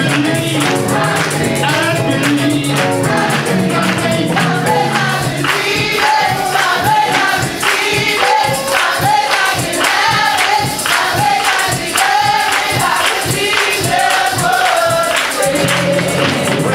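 Gospel choir and congregation singing together, with hand-clapping on the beat. The bass accompaniment drops out about five seconds in, leaving voices and clapping, and comes back near the end.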